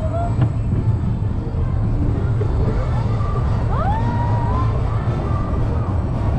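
Vekoma Roller Skater family coaster train cresting its lift hill and rolling into the first drop, with a steady low rumble of the wheels on the track. A couple of short rising squeals come about four seconds in.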